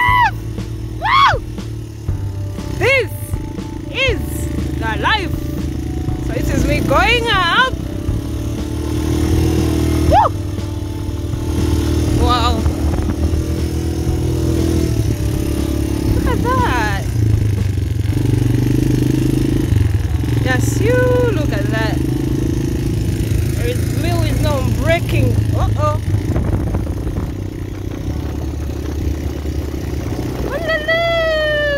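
Quad bike engine running steadily at an even throttle while riding across sand, with a voice, singing or calling out, heard on and off over it.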